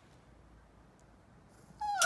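Husky puppy giving a short whining cry near the end that falls in pitch; before it there is only faint room tone.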